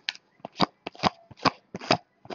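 Glossy 2015 Bowman's Best baseball cards being flipped through by hand, each card slid off the stack with a short, sharp flick, about one every half second.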